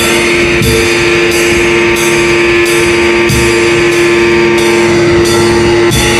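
Instrumental post-metal: a distorted electric guitar holds one note steadily over drums, with hits in an even pulse about every two-thirds of a second.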